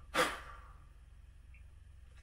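A single short, forceful puff of breath, blown out hard at close range, about a fifth of a second in and fading within half a second.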